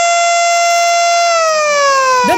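Ceremonial siren sounded by pressing the siren button to mark the official opening: one loud, steady wailing tone that, about a second and a half in, starts sliding slowly down in pitch.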